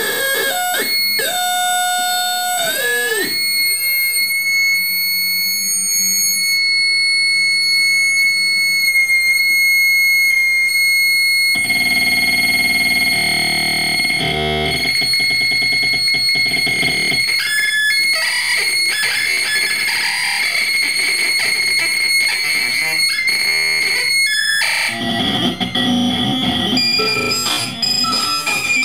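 Live electronic noise music played on analog and electronic devices through effects units. Gliding pitched tones settle into steady high tones. About twelve seconds in, a dense noisy layer comes in, and near the end the sound shifts to lower, rougher distorted noise.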